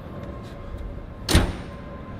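A single sharp knock a little past halfway, over a steady low background hum.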